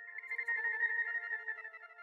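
Reason's Parsec 2 spectral synthesizer playing a bell-like patch: a few layered high tones held steadily, wavering slightly in level and brightness as its LFO modulates the sound.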